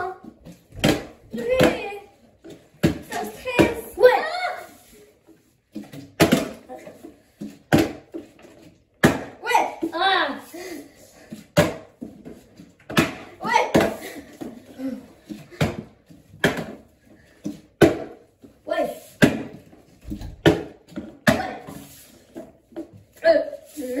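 Plastic bottles partly filled with liquid being flipped and landing on a tabletop, giving repeated sharp thuds and knocks. Children's excited voices come between the throws.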